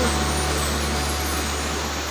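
Spring water trickling and running over rocks in a small stream, a steady rushing hiss with a low steady rumble underneath.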